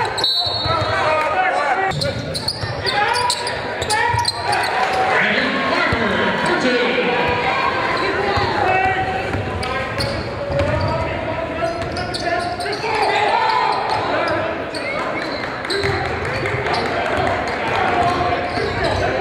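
Live basketball game sound in a gymnasium: players and spectators calling out, the ball bouncing on the hardwood court, and sneakers squeaking as the players cut, all echoing in the large hall.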